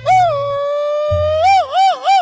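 A mariachi grito: one long held high yell that breaks into three quick up-and-down whoops near the end, over a mariachi's low guitarrón bass line.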